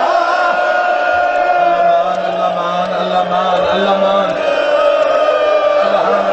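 A man's voice holding one long, drawn-out chanted note in a mournful lament, with a second, lower voice holding a note underneath for a few seconds in the middle.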